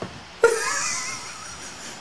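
A short alert sound, a wavering high tone over a hiss, that comes in suddenly about half a second in and fades away over the next second or so: a livestream donation alert.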